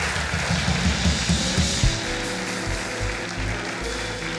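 Live house band playing a short instrumental bit: punchy drum and bass hits over the first two seconds, then held chords ringing on.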